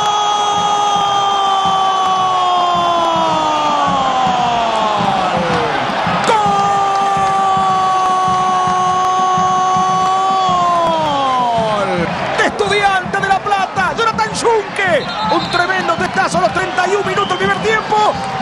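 A football commentator's long drawn-out goal cry, "goooool", held on one note for about six seconds with the pitch sliding down at the end. He takes it up again for another six seconds. After that come shorter, choppier shouts over the crowd.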